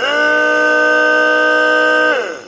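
A 175 W 12 V DC diesel transfer pump, used as a tube-well booster pump, switched on and running with a loud, steady whine of several tones. The whine rises briefly as the motor starts. Just after 2 s it is switched off and the pitch falls as the motor winds down.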